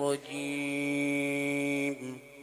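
A man chanting a Quran recitation holds one long, steady note, then breaks off abruptly near the end.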